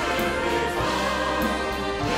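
Church choir and orchestra performing a worship song, many voices singing together over sustained orchestral accompaniment.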